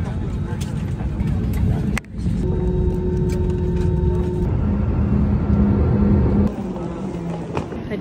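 Passenger jet airliner heard from inside the cabin: a steady low engine rumble with a steady whine over it, broken by short cuts about two seconds in and again near the end.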